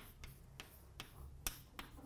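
Chalk tapping on a blackboard as a formula is written: a string of faint, irregular sharp clicks, the sharpest about one and a half seconds in.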